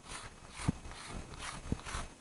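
Faint, scratchy strokes of a soft pastel stick rubbing on paper, with two soft knocks about a second apart.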